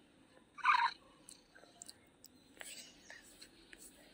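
A single short meow from Google's 3D augmented-reality cat, about half a second in, followed by a few faint clicks.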